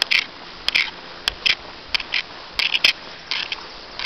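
Footsteps through tall grass: the grass swishes against the legs of someone walking, about one and a half strides a second, with a few sharp clicks mixed in.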